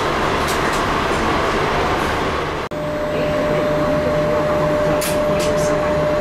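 Steady interior hum of a Cercanías commuter train standing at the platform, from its ventilation and onboard equipment. It breaks off briefly a little under halfway, after which a thin steady whine joins the hum, with a few faint ticks near the end.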